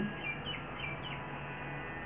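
Faint bird chirps: about four short, high calls in the first second or so, over a steady low background hum.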